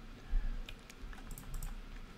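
Computer keyboard typing: about half a dozen soft, irregular keystrokes as letters are entered into an online crossword grid.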